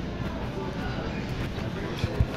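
A song playing over a store's overhead sound system, faint and steady under the store's background noise.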